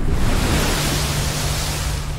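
A water-rush sound effect, a splashing whoosh of noise that comes in suddenly and thins out toward the end, over a low steady drone.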